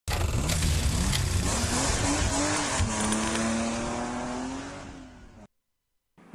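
Produced title-sequence sound effects of a car: an engine revving up and down with tyre squeal and a few sharp hits, then a held engine note that rises slightly and fades out about five seconds in.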